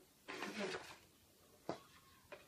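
A woman's cough, one short throaty burst, from someone with a stuffy nose after a cold. It is followed near the end by a single sharp tap.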